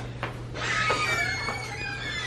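A high-pitched, wavering whine-like vocal sound starts about half a second in and slides slowly down in pitch.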